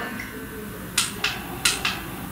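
Four short, sharp clicks about a second in, over quiet room tone.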